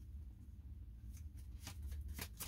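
A deck of tarot cards shuffled by hand: after a quiet first second, a quick run of soft card snaps and flutters that grows denser toward the end.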